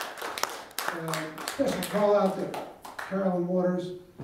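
Audience applause thinning out over the first second or two. A man's voice talks over the last of the clapping.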